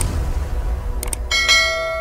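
Subscribe-button animation sound effect: two quick mouse-style clicks about a second in, then a notification bell chime struck twice in quick succession and ringing on as it fades, over a low rumbling bed.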